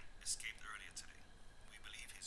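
Faint whispering: short, hushed, breathy bits of speech with no clear words.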